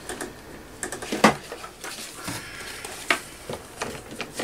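Paper journal pages being handled by hand: scattered light knocks and paper rustles, the sharpest knock about a second in.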